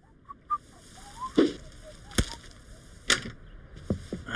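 Cartoon sound effects of rolled newspapers being thrown and landing on doorsteps: three or four short, sharp whooshing slaps about a second apart. There are faint short chirps in the first second.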